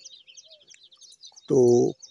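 Faint background bird chirping: a rapid run of short high chirps that fades out after about a second.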